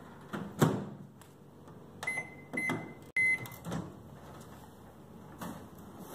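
A microwave oven being opened and a bowl handled inside it: a few sharp knocks and clunks of the door and dish, and three short high electronic beeps from the microwave about two to three seconds in.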